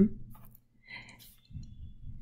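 A pause in a woman's talk, filled with a few faint clicks and a soft breath-like sound about a second in.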